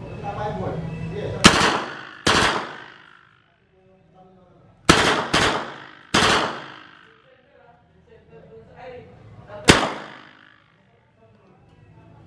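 Heckler & Koch MP5 9mm submachine gun firing about six single shots at uneven intervals, a second or more apart, each sharp report followed by an echoing tail.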